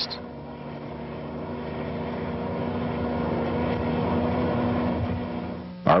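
A motor vehicle running with a steady engine hum, growing louder to a peak about four seconds in and then fading, as if passing by.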